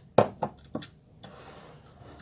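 A measuring cup being picked out among kitchenware, clinking against other dishes: three quick clinks in the first second, the first the loudest, then a soft rustle.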